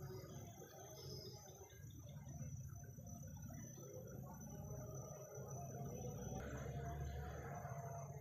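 Quiet tropical forest ambience: a steady high-pitched insect drone with scattered faint calls. A rustle of movement rises about six seconds in.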